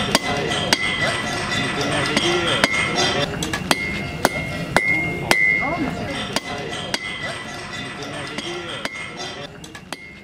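Blacksmith's hand hammer striking iron on a steel anvil, unevenly spaced blows about one or two a second, each leaving a high metallic ring. The sound fades out toward the end.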